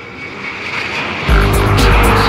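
Minimal techno from a DJ mix: a swelling noise builds over a sustained drone, then heavy bass and a beat come in suddenly just over a second in.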